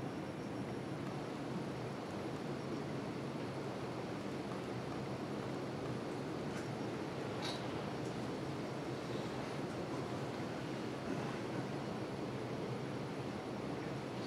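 Steady room noise of a meeting hall, with two faint clicks near the middle.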